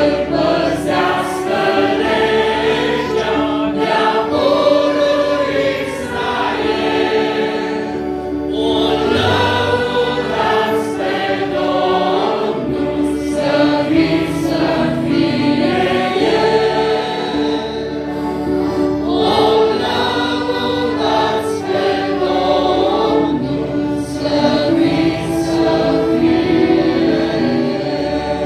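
A choir singing a Romanian hymn in slow, held chords, through its closing line and sung "Amen".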